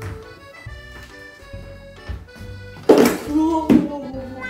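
White cockatoo giving a harsh, grating squawk of displeasure about three seconds in, in two loud bursts less than a second apart. Steady background music plays throughout.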